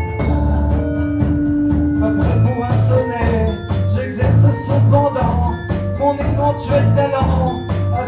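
Instrumental lo-fi hip-hop groove played live: upright double bass and drum kit keeping a steady beat, with a melodic part above.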